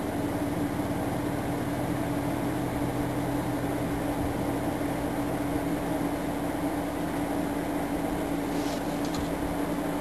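Steady low mechanical hum with a few droning tones, unchanging throughout, and a faint brief hiss near the end.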